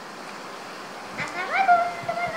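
Steady faint room hiss, then about a second in a young girl's high voice calls out one long, drawn-out greeting vowel that rises in pitch and is held.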